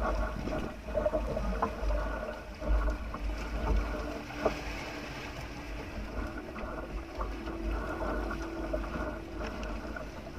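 Outrigger fishing boat's engine running steadily at low speed, with wind buffeting the microphone and a few light knocks.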